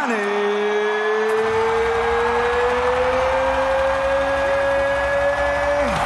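Ring announcer's long drawn-out call of the fighter's name over the arena PA, held for about six seconds and rising slowly in pitch over a steady crowd din, then cut off near the end.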